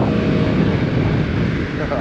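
Vespa GTS300 scooter's single-cylinder four-stroke engine running as it is ridden at town speed, mixed with wind buffeting the microphone.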